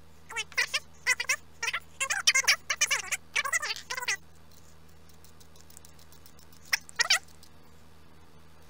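A 3D-printed plastic part squeaking against a metal bolt as it is twisted on by hand: a quick run of short, high squeaks over the first half, then two more near the end.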